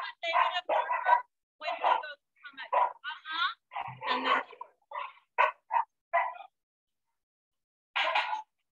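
A shelter dog barking in a quick, excited string of barks, with a whine among them, stopping about six and a half seconds in. It is the barking of a highly aroused, frustrated dog confined in a kennel run.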